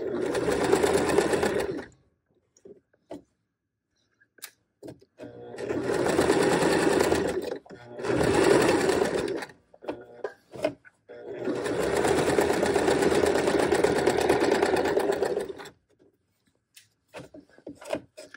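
Electric sewing machine stitching in four runs, the longest about five seconds, stopping and starting between them. Small clicks and fabric handling fill the short pauses.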